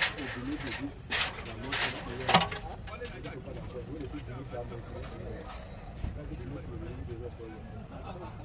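Faint voices talking in the background, with a few short sharp noises in the first two and a half seconds.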